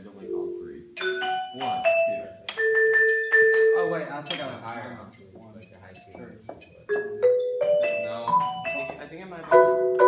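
Marimbas and other mallet keyboard percussion played in a halting rehearsal: single struck notes and short phrases with gaps, then a louder chord of several notes together near the end.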